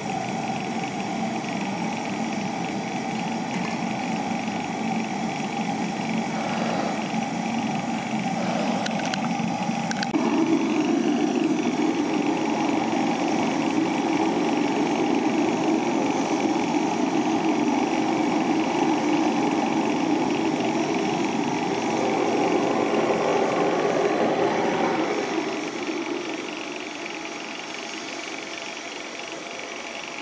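Foundry melting furnace's burner and air blower running with a steady loud rush. The sound grows fuller at about ten seconds and drops away to a lower level a few seconds before the end.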